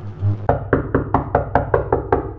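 Rapid banging on a door, about ten quick knocks at about six a second starting half a second in, over a low droning music bed.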